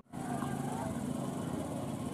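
Steady outdoor background noise with faint voices of people in the distance, starting abruptly at an edit.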